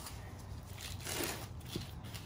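Gloved hands scooping and rustling loose, moist potting soil into a plastic pot: a soft crackling rustle, strongest about a second in.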